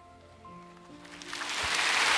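The final chord of a worship song is held on sustained instrumental notes and dies away. From about a second in, congregation applause builds and soon becomes the loudest sound.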